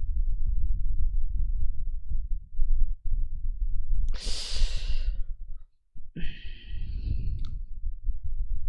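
A person breathing close to the microphone: a long, loud sigh about four seconds in, then a shorter, wheezy breath about two seconds later. A steady low rumble runs underneath.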